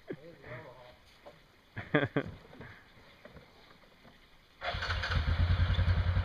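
ATV (four-wheeler) engine starting abruptly about three-quarters of the way in, then running at a steady idle.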